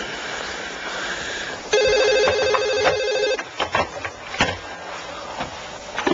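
A telephone ringing: one warbling ring lasting under two seconds, starting about two seconds in, followed by a few short knocks and clicks.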